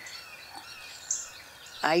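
Faint outdoor background with a few distant bird chirps during a pause in speech.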